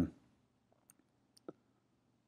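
A single sharp click about a second and a half in, with a couple of fainter ticks before it, over quiet room tone.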